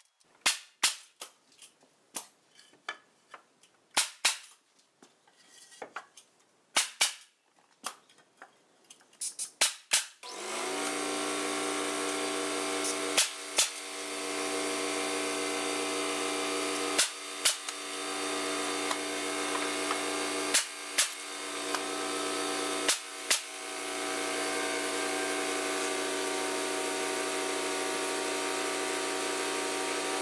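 Wooden boards knocking and clattering for about the first ten seconds. Then an air compressor starts and runs steadily, and a pneumatic nailer fires four times in quick pairs, nailing 2x4 cross boards into a shelf frame.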